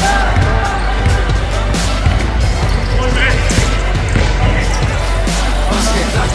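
A basketball bouncing on an indoor court during play, with players' voices, over backing music with a steady bass.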